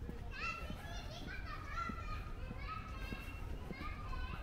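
Children playing out of view, their high-pitched shouts and calls coming in many short, rising bursts one after another.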